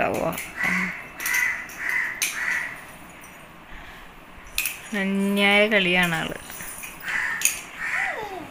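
A series of short, harsh calls, about five in the first two and a half seconds and a couple more near the end, over scattered clicks of plastic toys on a tiled floor.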